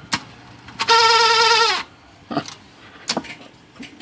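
IBM Model C electric typewriter running, its dry, unlubricated mechanism giving one loud, slightly wavering squeal about a second long near the middle, with sharp mechanical clicks just before and twice afterwards.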